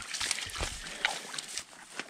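Footsteps rustling and crackling through dry grass and wet, boggy ground, irregular and uneven.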